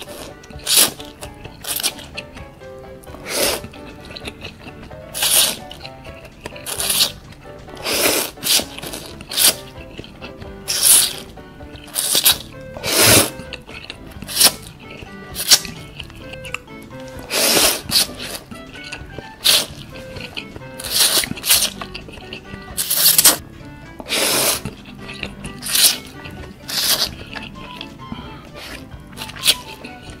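A person slurping instant ramen noodles from chopsticks: short, sharp sucking slurps, about one a second, with quieter mouth sounds between, over background music.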